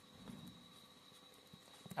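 Very quiet room tone with a steady thin high whine, and faint scratches and taps of a felt-tip marker writing on a board.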